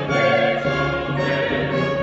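Sacred choral music with orchestral accompaniment: a choir holding sustained chords over strings.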